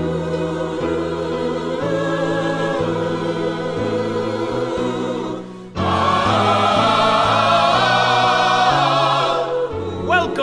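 Choir singing long held notes with accompaniment. The sound breaks off briefly about six seconds in, then the choir comes back louder and fuller.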